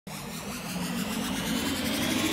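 Electronic intro-music riser: a noisy, buzzing build-up with a low drone, swelling in loudness and climbing in pitch.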